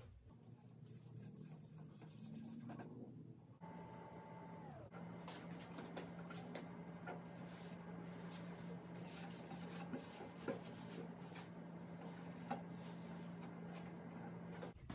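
Faint rubbing strokes as red stain is brushed and wiped onto pine boards with a rag, over a steady low hum that comes in about four seconds in.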